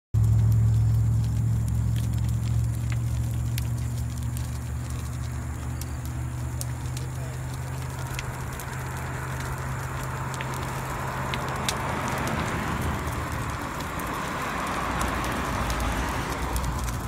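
Burning trailer dolly: the fire crackling with scattered sharp pops, its rushing noise growing louder from about eight seconds in. The fire is presumed to have been started by brake linings stuck against the drums and heating from friction. A low steady hum runs underneath and fades away after about twelve seconds.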